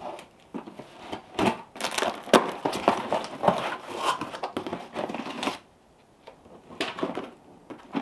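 A cardboard box being opened: the packing tape is slit and torn free and the flaps are pulled open, giving a run of irregular scratchy tearing and crinkling noises that dies down about five and a half seconds in.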